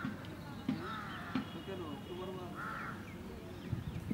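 A bird calling: three short calls about a second and a half apart, over low voices talking.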